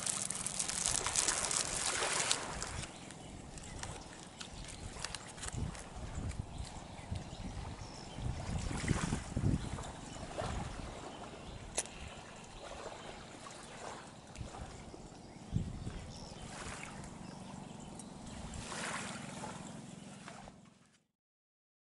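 Small waves lapping and washing on a muddy shore, rising and falling in irregular swells every few seconds.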